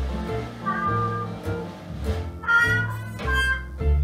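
Traditional New Orleans jazz band playing live: a trumpet plays short melodic phrases over drums and a low bass line.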